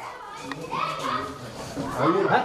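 Indistinct voices of people, some possibly children, speaking and calling out without clear words, loudest about a second in and again near the end.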